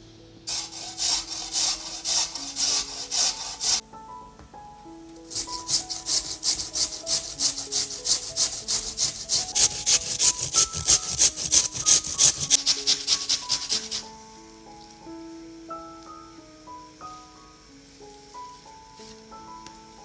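Raw potatoes rasped down a metal box grater in quick rhythmic strokes, about three or four a second, in two runs with a short pause between them, stopping about fourteen seconds in. Soft background music plays under it and carries on alone afterwards.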